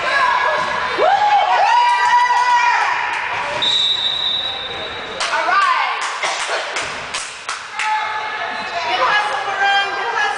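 Voices shouting in a gym. About three and a half seconds in, a referee's whistle blows once with one steady shrill tone for about a second and a half. It is followed by a run of irregular basketball bounces and thumps on the hardwood floor.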